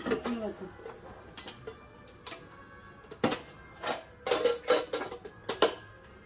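Containers and packages being handled and set down on pantry shelves: a series of sharp clicks and knocks, the loudest about three seconds in and a quick run of them in the last two seconds. A brief murmur of a voice at the start and faint background music underneath.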